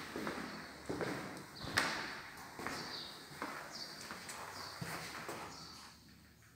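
Footsteps of a person walking on a hard floor, a step a little under every second at an even pace.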